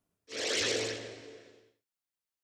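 A whoosh transition sound effect. It swells in suddenly about a quarter second in, then fades away over about a second.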